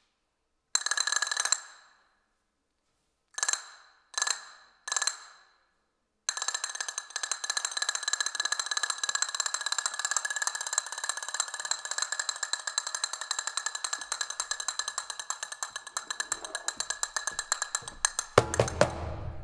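Flamenco castanets played by hand: a short roll, then three single clacks a little apart, then from about six seconds in a long, fast, unbroken stream of clicks and rolls.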